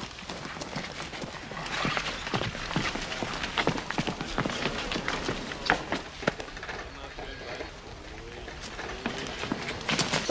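Footsteps of several people hurrying on rough ground, a quick, irregular run of scuffs and clicks.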